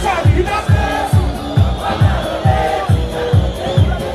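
Loud live music through a PA, with a heavy, steady beat a little over two beats a second. A performer's voice on the microphone and a shouting crowd sit over it.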